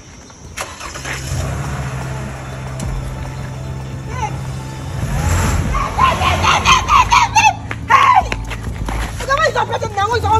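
A car engine starting about half a second in and then running with a steady low hum, under background music. Raised voices come in during the last few seconds.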